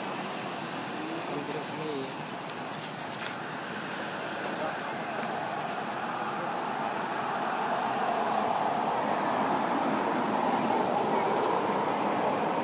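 Steady rushing noise that grows slightly louder, with no clear single event in it.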